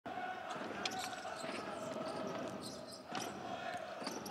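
Basketball bouncing on a hardwood court during live play, several sharp bounces over the steady background of the arena, with players' voices.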